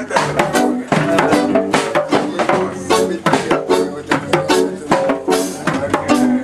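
Loud music with a steady beat and percussion.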